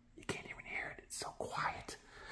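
A person whispering softly, with a few small clicks.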